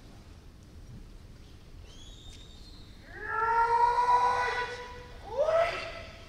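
Kendo kiai: a long held shout starts about three seconds in and lasts nearly two seconds, followed near the end by a shorter shout that rises in pitch.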